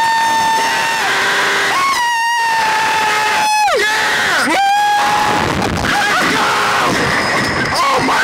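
Two men screaming as riders on a reverse-bungee slingshot ride: long, held high screams that break off with a sharp drop in pitch, followed by rougher yelling in the second half.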